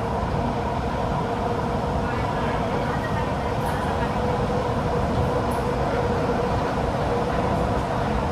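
Kawasaki–CRRC Sifang CT251 metro train running at steady speed, heard from inside the carriage: a steady rumble of wheels on rail with a steady whine over it.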